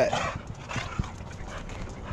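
A dog moving about on concrete, its nails making a few light ticks, the sharpest about a second in.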